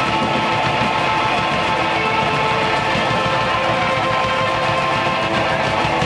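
Live band playing a full, steady instrumental passage: electric and hollow-body guitars over drum kit and upright bass.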